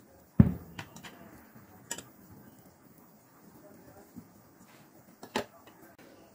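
A few sharp knocks of cookware as cauliflower stuffing is scraped out of a kadhai onto a plate with a spatula: one loud knock about half a second in, then a few fainter taps.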